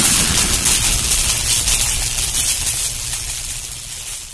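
The tail of an intro boom sound effect: a noisy rumble and hiss, fading steadily.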